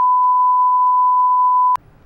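Test tone of the kind played with SMPTE colour bars: one steady, unbroken beep at a single pitch that cuts off suddenly near the end.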